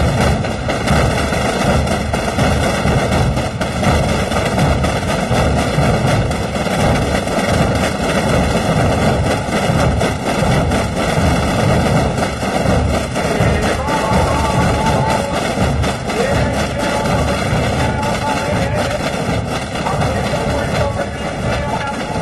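Massed drumming by thousands of Calanda Holy Week drums, snare drums and bass drums together, in one constant, unbroken roll with no gaps.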